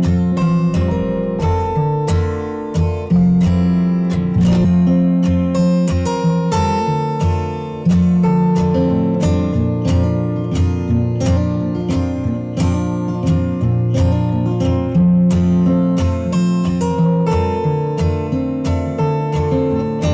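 Background music on acoustic guitar: a quick, even run of plucked and strummed notes over held bass notes.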